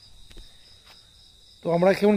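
Crickets trilling steadily in a high, pulsing chorus in the night air. A voice starts speaking near the end.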